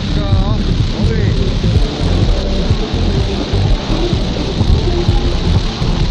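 Rushing whitewater of river rapids, a loud, steady hiss around the kayak, with pop music playing underneath.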